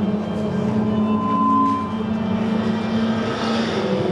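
Vehicle engine and road noise heard from inside the cabin, a steady low drone, with a short high tone a little over a second in.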